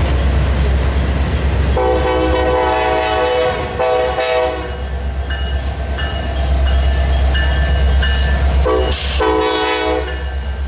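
Freight train of autorack cars rolling past with a steady low rumble of wheels on rail. A locomotive air horn sounds a chord of several tones: a blast of nearly three seconds starting about two seconds in, and a shorter one near the end.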